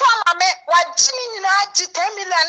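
A woman's high-pitched, sing-song voice, with quick rises and falls in pitch, from a phone-recorded clip.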